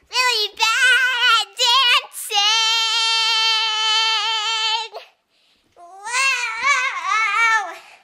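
A young girl singing unaccompanied in a high voice: wavering sung phrases, then one long held note for about two and a half seconds, a brief pause, and more sung phrases.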